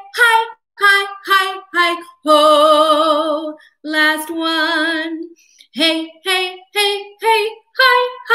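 A woman singing a staccato vocal warm-up scale on 'hey, hi, ho': short detached notes stepping down, then two long held notes with vibrato. About six seconds in, the run of short notes starts again a step higher.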